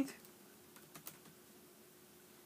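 A few faint short clicks about a second in, over a quiet room with a faint steady hum.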